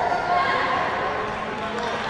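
High-pitched, drawn-out yells from a taekwondo fighter: kihap shouts held for a second or more at a time.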